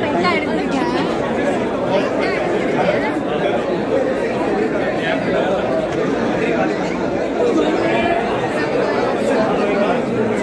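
Crowd chatter: many voices talking over one another at a steady level, with no single voice standing out.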